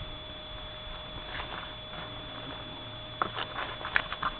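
Low background with a faint steady high whine, then, near the end, a short run of light rustles and clicks as foam packing peanuts and the cardboard box are handled.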